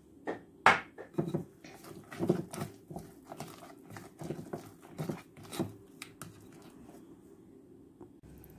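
Spatula stirring thick cake batter with walnuts in a glass bowl: irregular knocks and scrapes against the glass, one sharper knock early, the stirring quieting in the last two seconds.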